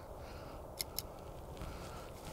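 Two faint, sharp clicks about a fifth of a second apart as the metal sliding tap is moved on the loading coil of a JPC-12 center-loaded vertical antenna, over a faint steady background hiss.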